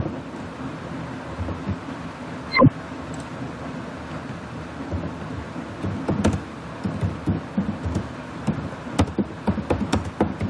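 Computer keyboard typing: irregular keystrokes clicking over a steady background hiss. One brief loud knock comes about two and a half seconds in, the loudest sound in the stretch.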